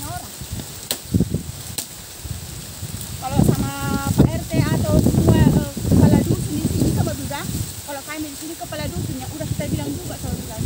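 A woman talking in the field, her voice running from about three seconds in, over rustling and crackling from dry palm fronds being dragged and handled, with a couple of sharp clicks in the first two seconds.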